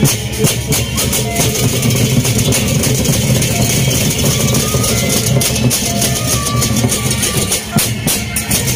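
Lombok gendang beleq ensemble playing: large double-headed barrel drums beat out a heavy low pulse under fast, continuous clashing of hand cymbals, with a few brief sustained metallic tones above.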